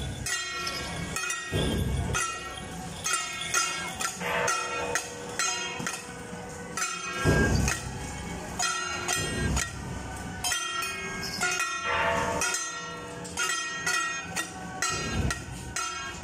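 Traditional Taiwanese temple-procession music: drum beats and clashing cymbals or gongs struck in a quick rhythm, with a sustained, shrill, horn-like melody over them.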